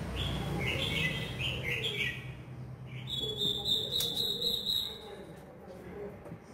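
Recorded bird calls played through a horn loudspeaker from a bird-trapping amplifier. A quick series of short high chirps comes in the first two seconds, then a steady, fluttering high whistle starts about three seconds in and lasts about two seconds, over a low hum.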